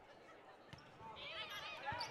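Faint court sounds of a volleyball rally: a dull knock of the ball being played, then a run of short high squeaks from shoes on the hardwood floor in the second half.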